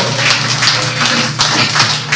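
Live metal band playing, with drum kit hits over a sustained guitar tone.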